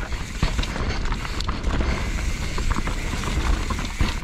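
2019 YT Capra full-suspension mountain bike rolling fast down a dirt forest singletrack: a steady rumble of tyres over the ground and wind on the microphone, with scattered clicks and rattles from the chain and frame.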